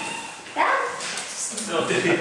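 A dog gives a short bark about half a second in, followed near the end by a person saying "no".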